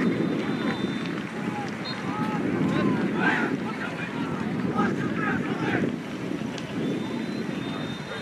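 Wind buffeting the microphone in a steady low rumble, with distant voices shouting across the field in two short spells.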